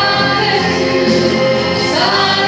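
A woman singing a Christian gospel song into a microphone, with musical accompaniment.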